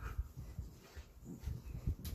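A dog making low, irregular play-growls and grunts while it is rubbed and wrestled with.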